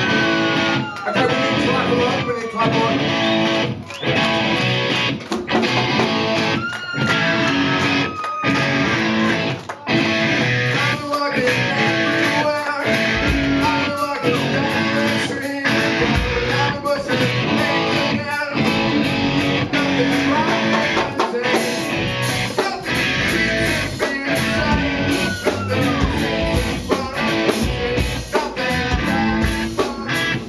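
Live band jamming on amplified electric guitar in a choppy stop-start rhythm, with gliding notes; a deep low end joins about 13 seconds in and stays from about 16 seconds.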